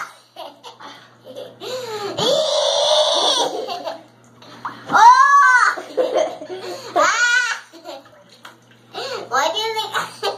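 A woman's voice making playful, high-pitched squeals and laughter: a long breathy squeal about two seconds in, then short loud squeals that rise and fall in pitch about five, seven and nine seconds in.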